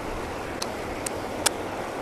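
Three faint crunches, about half a second apart, of a man chewing a crispy fried crappie wing, over a steady outdoor rush with wind on the microphone.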